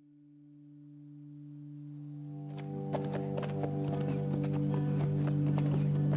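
A low, held music drone fades in and grows steadily louder. About halfway through, higher sustained notes join it along with the irregular clatter of horses' hooves.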